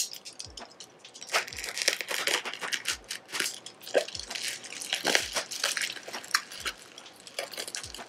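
Bubble wrap crinkling and crackling as a utility knife slices through it and fingers pull the plastic apart, in quick irregular bursts. A soft low beat thuds about once a second underneath.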